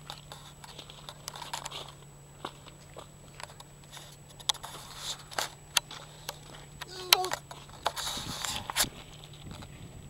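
Footsteps crunching on loose gravel with hand-held camera handling noise: irregular short crunches through most of it and a rougher rustle near the end, over a low steady hum.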